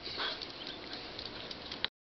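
Faint sounds of two dogs moving about on a tiled path, with a single sharp click near the end before the sound cuts off.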